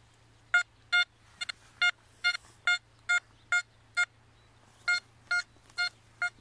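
XP Deus metal detector with the 22 HF coil giving short, identical, steady-pitched target beeps, about two a second with one brief pause, as the coil passes over a heavily mineralized, iron-rich stone. The clean, repeatable tone is the detector picking up the thin silver coin beneath the rock.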